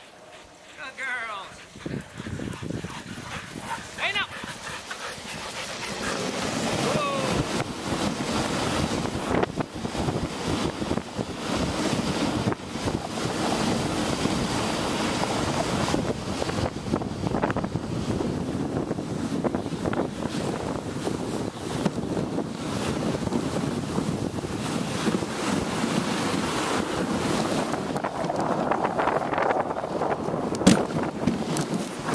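Sled dogs yipping and whining as the team sets off, then a steady rushing noise of the dog sled running over snow, with wind on the microphone, from about six seconds in.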